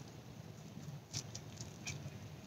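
Quiet background with a faint low hum and a few soft clicks, the clearest about a second in.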